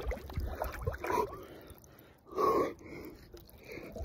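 A man's heavy, sharp breaths and grunts as he lowers himself into ice-cold water, the gasping of cold shock. One louder, longer breath comes a little past halfway.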